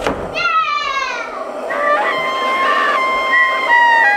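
A thump, then a falling tone and a string of held, horn-like notes, like a fanfare for a reveal.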